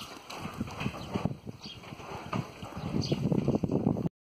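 Goats crowding at close range: irregular scuffs and knocks of hooves on dry dirt, louder in the last second.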